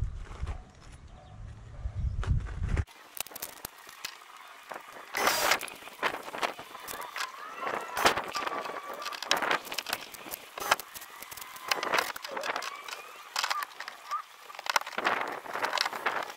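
Work noise from fitting a rod holder to a plastic kayak: a run of sharp knocks and clicks with short whines that rise and fall in pitch.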